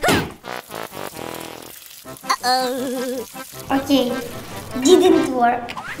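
Edited sound effects over background music: a quick rising whoosh, a fast crackling rattle, then a warbling tone, with a voice in the second half.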